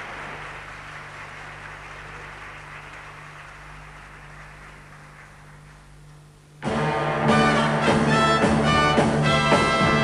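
Audience applause slowly dying away over a steady low hum. About six and a half seconds in, a live orchestra led by brass comes in loudly on the downbeat, starting the song's introduction.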